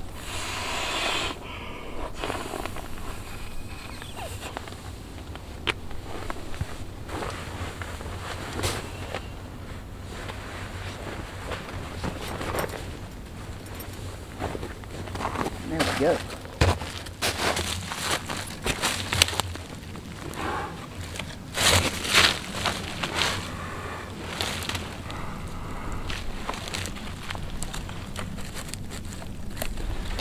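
Irregular rustling, scraping and clicks of camping gear being handled, over a steady low rumble.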